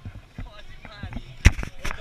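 People talking briefly and indistinctly, with a sharp knock about one and a half seconds in and a smaller one near the end: the hand-held camera and microphone being handled and bumped.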